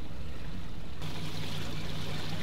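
Steady low hum of a trolling boat's motor; about a second in, the gushing and splashing of water circulating through a live-bait well joins it and stays.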